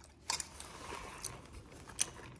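Plastic lid being pulled off a foam drink cup: a sharp click about a quarter second in, faint scratching and crackling of plastic against foam, and another click near the end.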